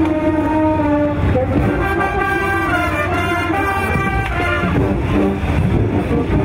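A brass band playing a tune, with trombone and sousaphone, in a series of held notes.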